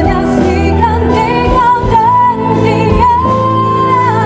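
A woman singing a slow Malay pop ballad live with a band, her voice wavering with vibrato and then holding one long note near the end.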